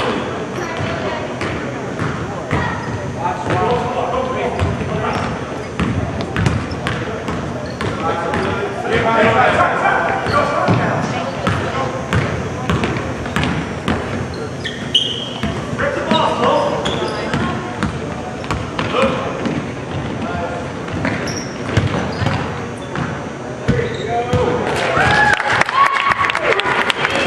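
Basketball bouncing on a hardwood court as players dribble, in short irregular strokes, with the voices of players and spectators calling out at times.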